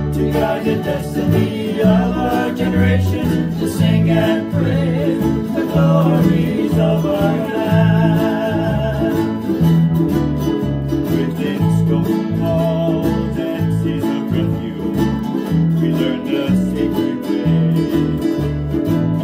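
A woman singing with vibrato over a strummed ukulele and a steady, rhythmic plucked accompaniment.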